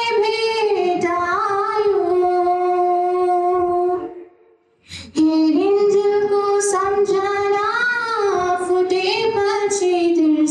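A young woman singing solo and unaccompanied, in long held notes with gentle pitch slides. There is a breath pause about four seconds in.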